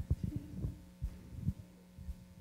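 Irregular low thumps and bumps of a handheld microphone being handled, over a steady low hum from the sound system.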